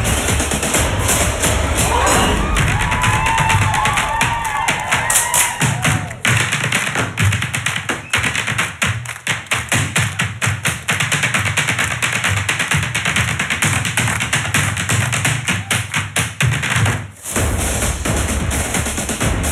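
Backing track with a heavy bass beat and drums, then from about six seconds in rapid Irish dance hard-shoe taps clattering over the beat. Near the end the sound briefly drops out before the beat comes back.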